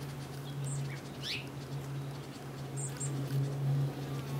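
Small birds chirping: short high-pitched calls, with a falling chirp a little over a second in and a quick double chirp near three seconds, over a steady low hum.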